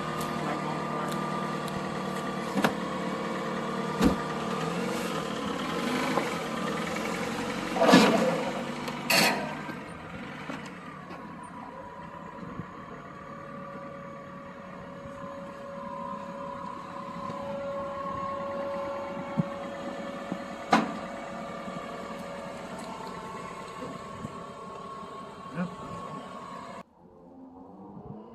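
Car engine idling steadily, with knocks and bumps from the phone being handled, the loudest a pair of thumps about eight and nine seconds in. The hum cuts off abruptly near the end.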